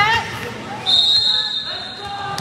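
Shouting voices right at the start, then about a second in a referee's whistle blows one steady blast of about a second, stopping play at the end of the rally.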